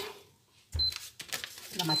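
Paper bag of flour rustling and crinkling as it is picked up and handled, starting with a bump about three-quarters of a second in.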